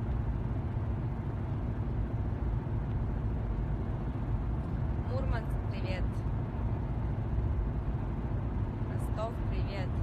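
Steady low rumble of a car's engine and road noise heard from inside the cabin, with brief snatches of a voice about halfway through and again near the end.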